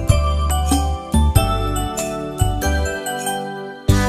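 Instrumental break of a children's nursery-rhyme song: ringing, bell-like struck notes over a steady bass line at a regular beat, with no singing.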